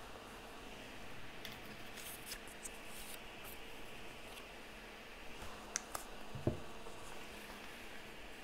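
Faint rustling of paper pieces being moved and laid on a notebook page, with a few light clicks and a soft knock about six and a half seconds in.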